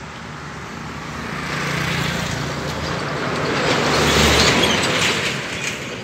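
A motor vehicle passing by, its engine and tyre noise swelling to a peak about four seconds in and then fading.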